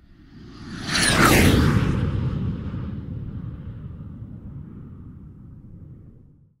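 Logo-reveal sound effect: a whoosh that swells to its peak about a second in, with a falling high sweep, then a low rumbling tail that slowly fades out.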